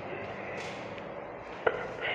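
Low steady room noise with a single short, sharp click or tap about one and a half seconds in.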